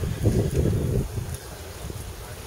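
Wind buffeting the microphone, a rough low rumble that swells during the first second and then settles to a lower steady rumble.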